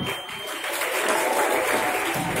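Spectators clapping, the applause building about half a second in and continuing steadily.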